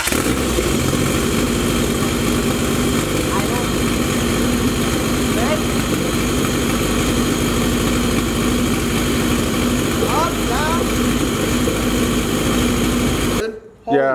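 Freshly swapped turbocharged Honda four-cylinder engine starting right up and idling steadily, then shut off shortly before the end.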